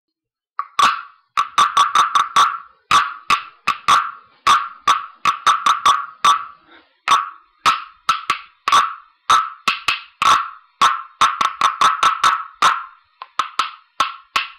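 Frog tapper solo: a string of sharp taps, each with a short ringing tone, in an uneven rhythm of about two to three taps a second, starting under a second in.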